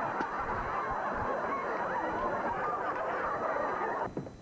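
Studio audience laughing, many voices overlapping in one steady wave of laughter.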